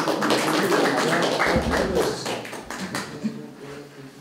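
Small audience applauding, dense at first and dying away about three seconds in, with a low thud about halfway through.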